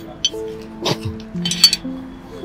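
Film background music of slow, held notes changing pitch. A few short sharp noises come through about a second in and again near the end.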